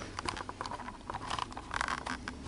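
Small clicks, taps and rustling from fingers handling a flamenco guitar's nut, seated on a thin wooden shim, at the headstock. The clicks come in quick clusters and are busiest near the end.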